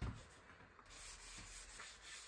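A low thump, then from about a second in a paper towel rubbing over wood with a dry, hissing scrape as finish is wiped onto a turned wooden spoon.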